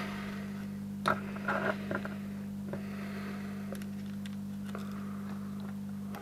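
A few small metallic clicks and taps as alligator test clips are handled against LED bulbs, about one to three seconds in, over a steady low hum.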